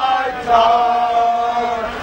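Football fans singing a drawn-out chant together, with one long held note from about half a second in.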